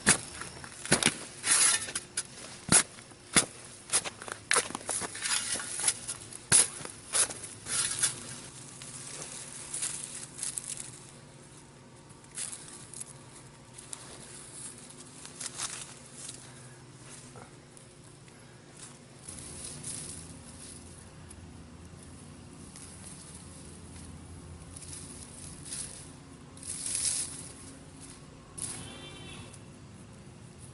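Garden shovel digging into soil: a quick run of sharp scrapes and crunches as the blade is driven into the dirt for the first eight seconds or so. After that come quieter, scattered rustles of hands sifting through loose soil.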